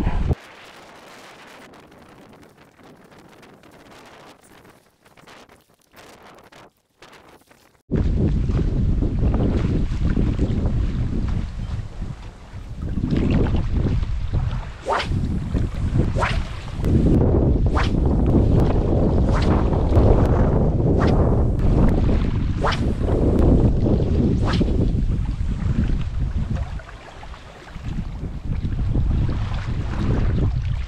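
Wind rumbling on the microphone in strong gusts, with choppy water lapping at the shore beneath it. The wind starts suddenly about eight seconds in after a much quieter opening and eases briefly near the end.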